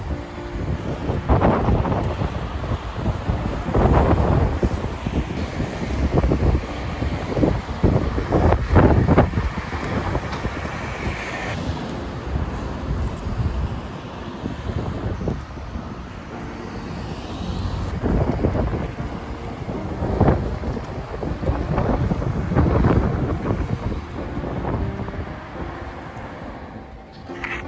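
Road traffic passing through an intersection, cars swelling past and fading, with wind buffeting the microphone in uneven gusts.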